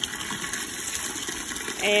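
Water from a garden hose pouring into a plastic tub already part full of water: a steady splashing gush.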